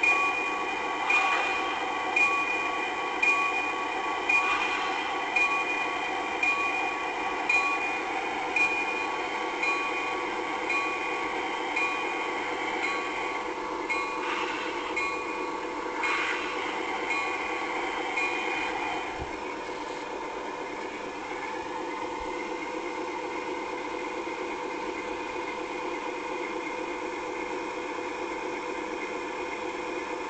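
A locomotive bell ringing steadily, about one strike a second, over the running of a train. The bell stops about two-thirds of the way through, leaving the steady sound of the train.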